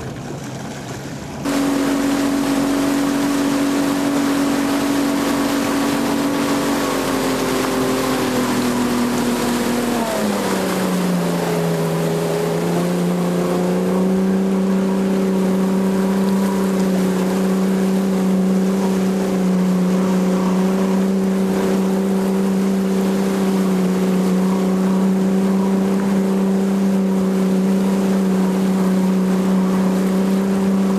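Motorboat engine running with a steady drone over wind and water noise. About ten seconds in its pitch drops as it is throttled back, then it holds steady at the lower note.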